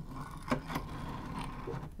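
3D-printed plastic sliding door panels of a toy archway being pulled apart by hand: a faint scrape of plastic on plastic, with two small clicks about half a second in.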